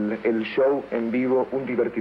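A man speaking, his words not made out, with a thin, radio-like sound.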